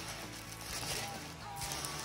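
Background music playing quietly, with the crinkle of a clear plastic sleeve as a rolled canvas is drawn out and unrolled.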